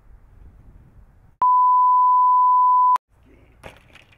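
A single loud, steady, high-pitched electronic bleep, like a censor bleep, lasting about a second and a half. It starts and cuts off suddenly, with faint outdoor background noise before and after.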